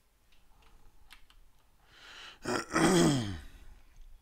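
A man coughs once about two and a half seconds in: a breathy rush, then a loud voiced cough that falls in pitch. A few faint clicks come before it.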